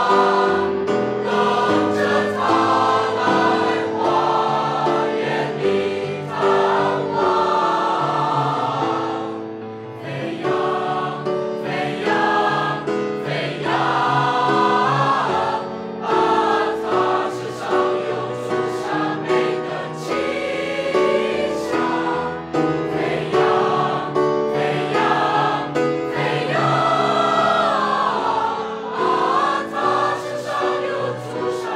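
Mixed choir of girls' and boys' voices singing a Chinese art song in parts, with a brief pause between phrases about ten seconds in.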